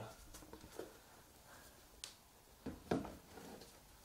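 A few faint, light clicks and knocks over quiet room tone, the loudest about three seconds in.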